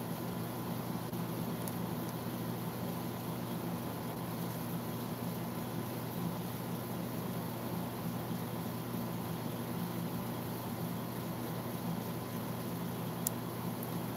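Steady low hum under a background hiss, the even drone of a small motor or fan in a small room, with one faint click near the end.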